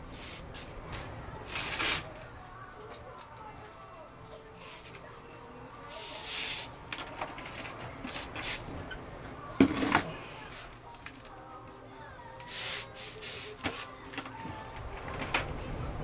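Handling noise from a printer's plastic housing being worked on with a screwdriver: scattered rustles, scrapes and clicks, with one sharp knock about ten seconds in.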